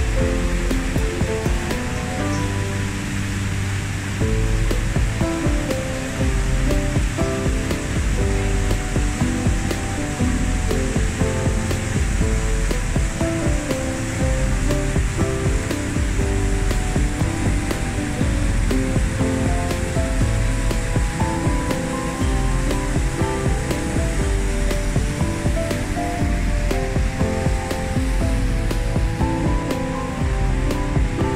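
Rushing water of a mountain waterfall and torrent, a steady loud hiss, with background music playing a melody over it.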